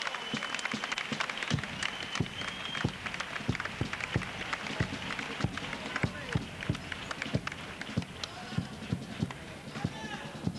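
Theatre audience clapping and calling out, with irregular heavy thuds of footsteps on the wooden stage and two short high whistles in the first few seconds.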